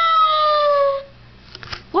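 A cat-shaped novelty cookie jar's recorded meow, set off as its head-shaped lid is lifted: one long call falling in pitch that stops about a second in. A few light clicks follow.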